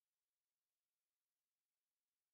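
Near silence: only a very faint, steady hiss of the recording's noise floor.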